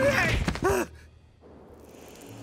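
A cartoon character's short strained vocal sounds, sigh- and groan-like with pitch arching up and down, cut off suddenly less than a second in.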